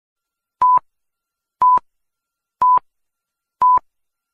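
Four short electronic beeps, evenly spaced one second apart, all at the same pitch.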